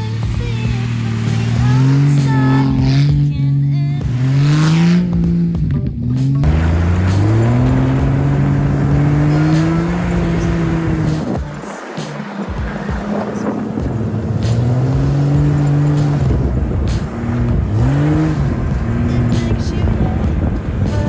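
Jeep Wrangler YJ engine revving up and falling back again and again as it spins its wheels and slides on snow, with music underneath. The revs drop away briefly about halfway through, then climb again.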